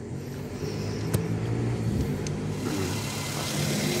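A car engine idling with a steady low hum, and a single sharp click about a second in.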